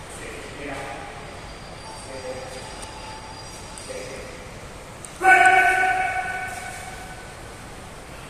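A man's loud, drawn-out call of one held note about five seconds in, fading as it echoes round a tiled hall: a recall command to a Belgian Malinois waiting in a down.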